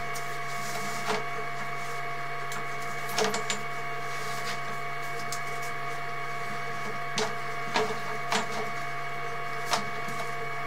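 Steady electrical hum with several constant whining tones from the sewer inspection camera equipment, broken by about seven sharp clicks scattered through, as the push cable is worked through the cast iron drain line.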